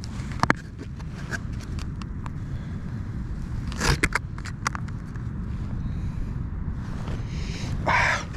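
A hard plastic blister pack of soft lures crinkling and clicking as it is handled: a few sharp clicks about half a second in, a louder cluster near the middle, and a longer crackle near the end, over a steady low rumble.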